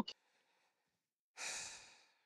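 A person's sigh: a single breathy exhale about one and a half seconds in, starting suddenly and fading out over about half a second.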